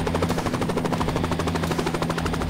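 Bell 505 helicopter lifting off into a low hover: its two-blade main rotor gives a rapid, even chop of blade beats over the steady hum of the turbine and drivetrain.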